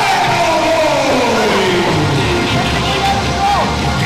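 Loud wrestling entrance music, with a long falling pitch glide over the first two seconds or so, over crowd noise and shouts.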